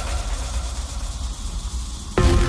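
Transition in an electronic dance track: a deep rumbling bass and a hiss of filtered noise carry on with the melody dropped out, sinking a little in level.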